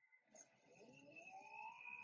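Near silence, then a faint rising whine from the anime episode's soundtrack that starts under a second in and swells toward the end.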